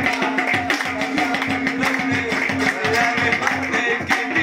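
Pashto folk music played live: a rubab plucking a melody over quick tabla strokes, with hand claps keeping time.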